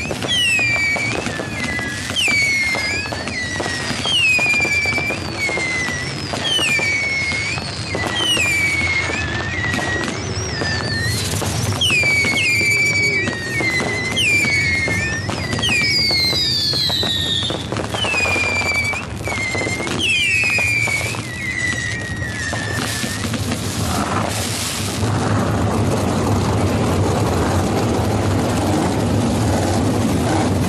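Infield fireworks: a string of shrill whistles, each falling in pitch, about one a second, over crackling pops and bangs. The whistles stop about three-quarters of the way through, and the 360 cubic-inch V8 engines of a pack of sprint cars rise in their place near the end.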